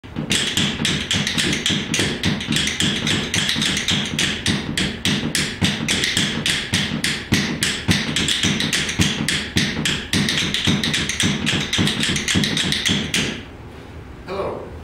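Two pairs of yellow-pine rhythm bones played one pair in each hand: a fast, steady run of dry wooden clicks in an old-time rhythm. The clicking stops about a second before the end.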